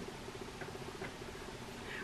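Quiet room tone: a faint steady hum and hiss with two soft ticks about half a second and a second in.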